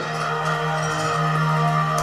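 A sustained musical chord from a documentary's title music, held steady without change.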